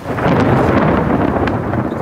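Heavy rain, loud and close on the microphone with a deep rumble underneath, starting suddenly just after the beginning; a single sharp tap about a second and a half in.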